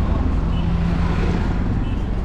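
Large bus engine running close by: a steady low hum with a held low tone, amid street traffic.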